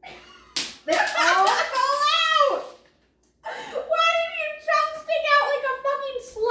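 High-pitched wordless squeals and cries from women's voices, in two long gliding stretches, with a sharp smack about half a second in.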